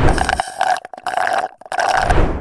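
A comic burp sound effect, broken by a couple of short gaps.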